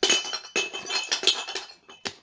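A rapid jumble of clinks and clatter with a glassy ring, dying away near the end.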